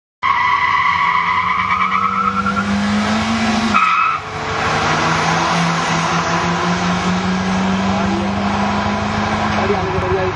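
Sedans racing at full throttle, heard from a moving car with loud wind and road rush. The engine note climbs for the first few seconds, breaks off briefly about four seconds in, then holds and rises slowly again.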